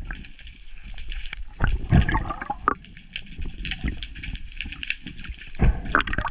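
Water gushing and bubbling around an underwater camera as the diver moves, in two louder rushes about two seconds in and near the end, over a steady faint crackle.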